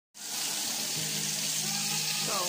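Oil sizzling steadily as whole fish fry in a pan; the sizzle cuts in suddenly out of silence just after the start.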